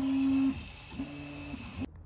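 Original Prusa i3 3D printer's stepper motors humming through two head moves: a louder steady tone about half a second long, then a quieter one, each gliding up at the start and down at the end, over the steady hiss of the printer's fans. The sound cuts off suddenly just before the end.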